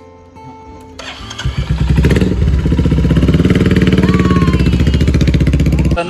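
A motorcycle engine starts up about a second in and builds to a loud, steady, fast-pulsing run close by.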